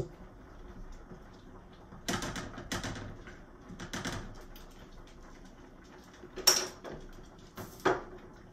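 Several irregular clacks and knocks of kitchen utensils and a pan being handled at the stove, the loudest about six and a half seconds in.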